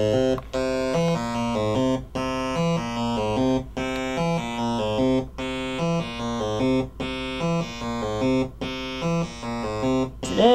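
A homemade 8-step analog sequencer (Baby 10 design) driving an Atari-Punk-Console-style DIY synth: a buzzy electronic tone steps through a loop of about eight notes in a strange, alien-sounding scale. Each step lasts about a fifth of a second, and the loop repeats about every second and a half with a brief dropout once each time round.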